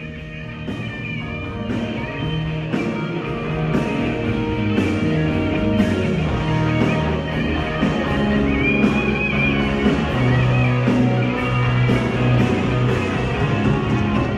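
Rock music: electric guitar over bass and a steady drum beat with a sharp hit about once a second, building slightly in loudness over the first few seconds.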